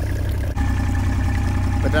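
Mercury 90 outboard motor idling steadily, purring like a kitten, running smoothly again after its fuel pump was rebuilt and its ethanol-gummed fuel system cleaned. The sound breaks off for an instant about half a second in.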